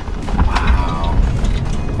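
Steady low rumble of road and tyre noise heard inside the cabin of an electric GMC Hummer EV driving on a paved road.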